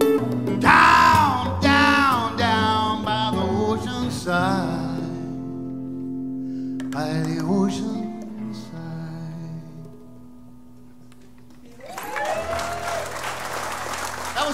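A live acoustic band of guitars, fiddle and hand percussion playing the closing bars of a song with a sung melody, ending on a held chord that rings out and fades away. About twelve seconds in, the audience starts applauding and cheering.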